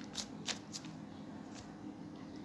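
Faint handling noise of paper on a clipboard: a few light clicks and rustles in the first second, then a quiet steady hiss.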